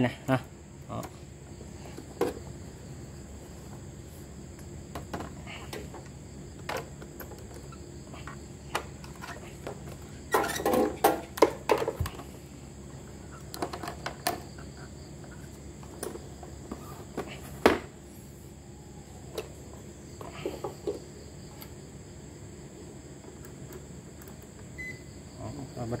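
Scattered knocks and clatters of a plastic induction cooktop being handled, turned over and set down, with a burst of knocks about ten seconds in and a single sharp knock a few seconds later. A steady faint high-pitched tone runs underneath.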